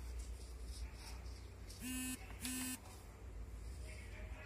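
Two short electronic beeps of one steady pitch, about half a second apart, a couple of seconds in, over a continuous low hum.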